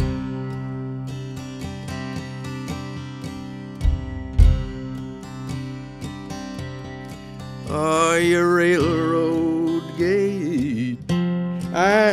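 Acoustic guitar starting a folk song with ringing picked and strummed chords, with two low thuds about four seconds in. A higher melody with wavering pitch joins over the guitar about eight seconds in.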